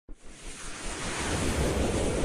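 Swelling whoosh sound effect on an animated logo intro: a rush of noise, like wind or surf, that starts suddenly and grows steadily louder.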